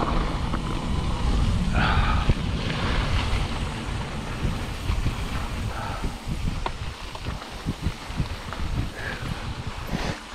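Wind buffeting the camera microphone as a mountain bike rolls down a rocky dirt trail, with many short knocks and rattles from the tyres and bike over rocks. It grows somewhat quieter in the second half as the bike slows.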